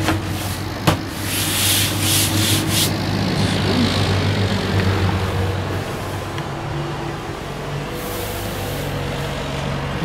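Vinyl bed cushions and the berth's sliding platform being pushed by hand, giving a rubbing, scraping rush between about one and three seconds in, after a single click. A steady low hum runs underneath.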